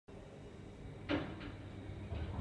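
Thyssenkrupp traction elevator at a landing, doors still closed: over a low steady hum, a sharp clunk about a second in and a lighter click just after, as the door mechanism engages before the doors open.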